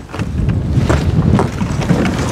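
Wind rumbling on the microphone over the scrape and crunch of a horse-drawn sled and hooves moving through snow.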